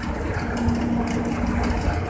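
Steady road and engine noise inside a moving vehicle on a highway: a continuous low rumble, with a faint steady hum through the middle.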